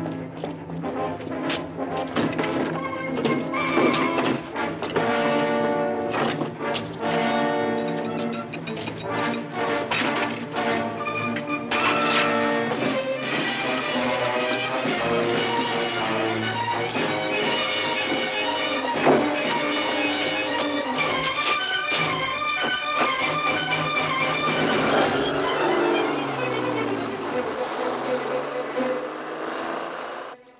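Orchestral film score with prominent brass.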